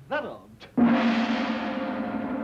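A brief spoken syllable, then just under a second in a gong is struck once and rings on with a steady, slowly fading tone: a cartoon sound effect for the genie's magic.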